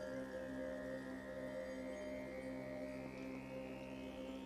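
Background ambient music of sustained, held tones that slowly swell higher.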